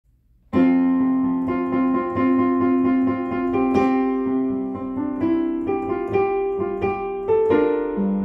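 Digital piano played in a piano voice: slow, held chords with a melody on top, coming in suddenly about half a second in.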